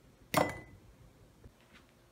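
A single sharp clink with a short ring, about a third of a second in: a mini basketball striking a white ceramic mug.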